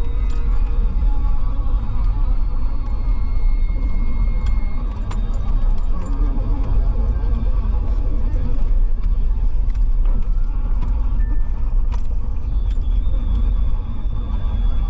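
Car cabin road noise while driving on a wet road: a steady low rumble of tyres and engine, with scattered light clicks and rattles.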